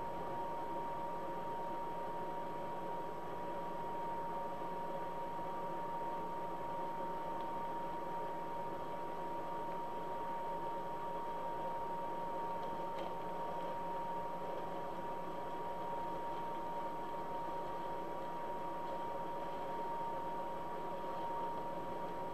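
Steady background hiss under a constant high-pitched whine, with no distinct sounds standing out.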